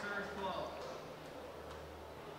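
Faint voices briefly near the start, then a quiet racquetball court hall with a low steady hum.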